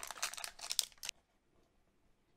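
Foil wrapper of a Pokémon trading-card booster pack being torn open by hand: a burst of crinkling and tearing that stops about a second in.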